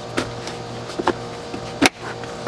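Plastic cup holder being pushed onto the base of a booster seat, with a few light clicks of plastic on plastic. Just before the end comes a sharp snap as its tab locks into the slot.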